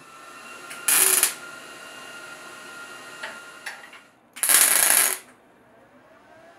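MIG welder laying two tack welds on thin 16–18 gauge sheet-steel strips: a short burst of arc noise about a second in, and a longer one of nearly a second near the end.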